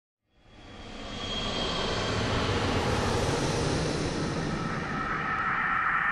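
A steady rushing noise with no clear pitch fades in over the first second and a half, then holds.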